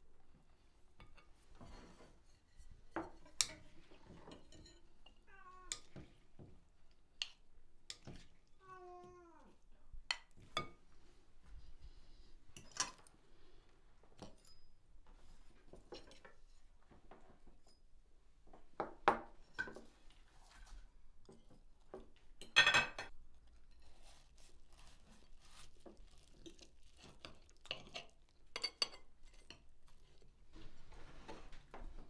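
Forks and knives clinking and scraping on ceramic plates during a meal, with a louder clatter a little past the middle. A cat meows twice in the first ten seconds.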